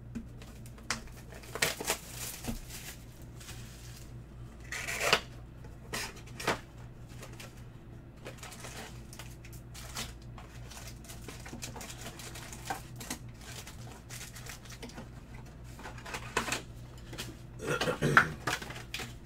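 A cardboard trading-card hobby box being opened and its foil card packs handled and stacked: scattered taps, clicks and crinkling rustles, with a louder rustle about five seconds in and another near the end, over a low steady hum.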